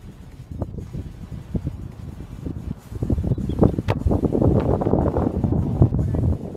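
Wind buffeting the microphone, an uneven low rumble that grows stronger about halfway through.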